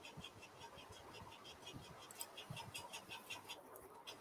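Near silence: faint room tone from an open call microphone, with a faint, even ticking of about six ticks a second and a few soft low thumps.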